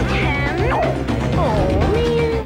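Playful cartoon theme music, with wordless vocal sounds sliding up and down in pitch over steady low bass notes.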